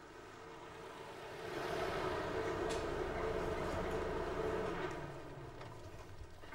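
A car driving by: engine and road noise swell over the first second and a half, hold, then fade near the end.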